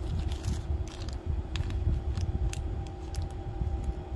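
Hands handling small plastic bags and the metal rings inside them: light crinkling and small clicks over irregular soft bumps against the table, with a faint steady hum underneath.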